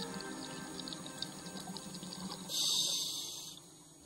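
Soft background music, then about two and a half seconds in a one-second hiss of bubbles from a scuba diver's exhaled breath, the loudest sound here. The music fades out near the end.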